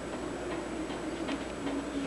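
Steady background hiss with a few faint, irregular ticks.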